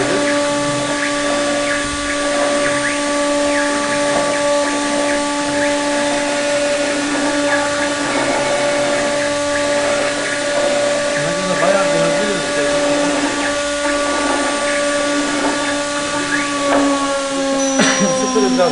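CNC wood router spindle running with a steady high whine, its pitch dropping near the end as it slows.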